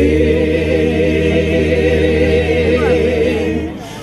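Mixed choir of men and women singing a cappella, holding one chord with a slight waver for nearly four seconds, then fading near the end.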